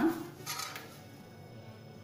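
A spoon scraping briefly across a ceramic plate about half a second in as chopped fruit is pushed off into the custard pot, then quiet room tone.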